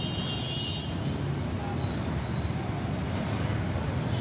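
Steady street traffic at a busy intersection: engines of jeepneys, motorcycles, vans and buses running together in a continuous hum.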